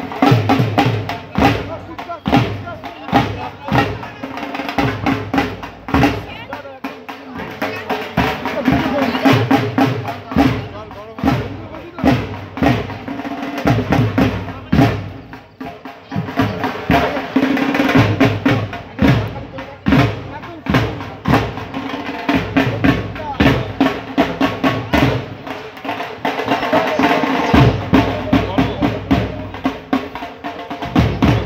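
Drums beaten in a steady run of sharp beats, with people's voices talking and calling close by.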